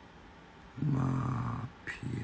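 A man's low voice holding one steady note for just under a second, hummed or sung, followed by a short click.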